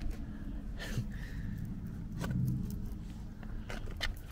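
Steady low road and engine rumble heard inside a moving car's cabin, with a few light clicks and knocks.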